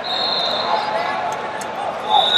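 Busy wrestling-tournament gym: a whistle shrills briefly at the start over shouting voices and the general noise of the hall.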